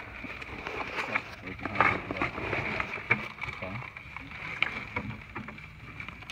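Small hand tool scraping and picking at rock and loose stone chips in a crystal pocket, giving irregular clicks and scratches.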